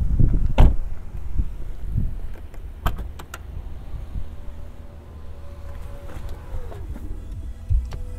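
A few sharp clicks, then the power tailgate motor of a 2021 Volvo V90 Cross Country whirring steadily for about two seconds, falling in pitch and stopping as the hatch reaches full open. A low rumble runs underneath throughout.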